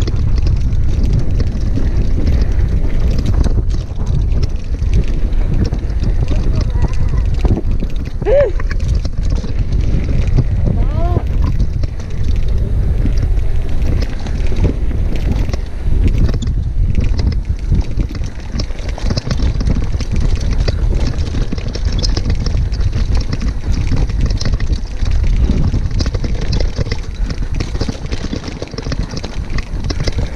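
Mountain bike descending a rough dirt and rocky downhill trail: wind buffeting the helmet-camera microphone, with tyres on dirt and the bike rattling and clattering over bumps and rocks.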